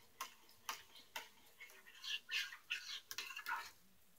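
A small spoon clicking and scraping against a metal pot of hot liquid plastic as purple glitter flake is tapped into it. Three light clicks come in the first second or so, then a string of short, soft scrapes.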